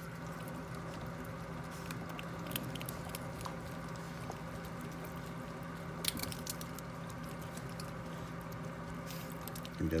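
A striped skunk nibbling at a peanut in its shell held out by hand, heard as a few faint scattered clicks and crunches over a steady low hum.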